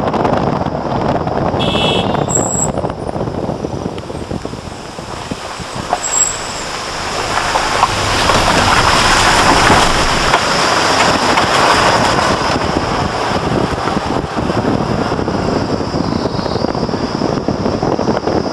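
Road vehicle driving along a mountain road, heard from inside with the window open: steady engine, tyre and wind noise that swells louder in the middle. A brief high-pitched beep sounds about two seconds in.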